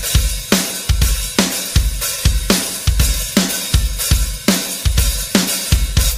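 Opening of a hard rock song: a drum kit playing a steady beat of about two strikes a second, with kick drum, snare and cymbals.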